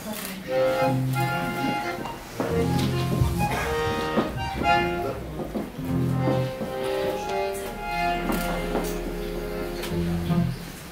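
Instrumental introduction to a Macedonian folk love song: an acoustic guitar with an accordion carrying the melody in held notes.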